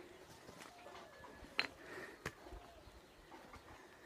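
Faint outdoor quiet: footsteps and handling on stony, leaf-strewn ground, with two sharp clicks about one and a half and two seconds in, and faint distant bird calls behind.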